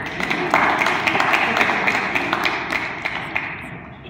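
A roomful of people applauding: a dense patter of hand claps that starts suddenly, holds for a couple of seconds and dies away near the end.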